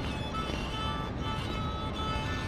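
A violin playing slow, held notes that sound out of tune: the instrument needs tuning.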